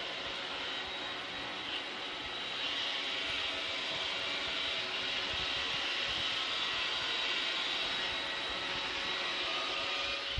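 Robot vacuum running across a hardwood floor: a steady motor whine with brush whirr, growing a little louder about two and a half seconds in.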